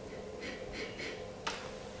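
A wine taster sniffing red wine in a glass: three short, faint sniffs, then a single click near the end.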